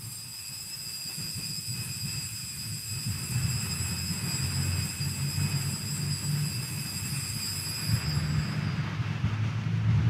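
Steady low rumble of background noise, with a thin high-pitched whine held steady through most of it and fading out near the end.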